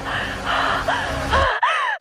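Short, strained gasps and cries from a frightened voice, rising and falling in pitch, over trailer music. The low end cuts out suddenly about three-quarters of the way through.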